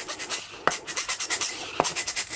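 Scotch sticky lint roller rolled over a ceramic mug, its adhesive sheet crackling quickly as it grips and peels off the glaze, with two light clicks about a second apart.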